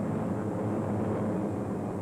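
Propeller aircraft engines droning steadily, a low, even drone with no breaks.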